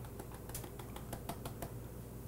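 Pepper being shaken from a shaker over a cast-iron pan: light, irregular ticks and clicks, about four a second, over a low steady hum.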